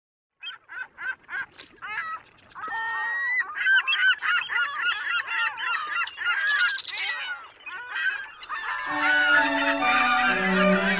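A flock of gulls calling, a few separate calls at first, then many overlapping. Music comes in near the end.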